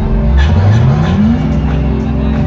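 Live music through a festival stage's sound system, heard from within the crowd. About half a second in, a deep synth note slides up in pitch, then holds.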